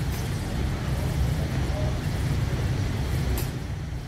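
Steady low rumble with a faint hiss above it: background noise of the room or sound system.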